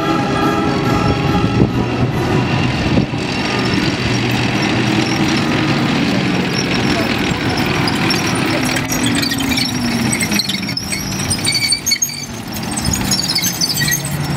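Tracked armoured personnel carriers driving past on a dirt track: diesel engines running under heavy rumble, one engine note dropping about two-thirds of the way through, with high squeaks from the tracks in the second half.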